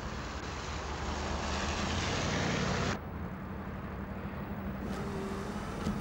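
Pickup truck driving on a rain-wet road: a steady engine hum under a hiss of tyres on the wet surface, growing louder as it approaches. About three seconds in the hiss drops away suddenly, leaving the engine's duller drone as heard inside the cab.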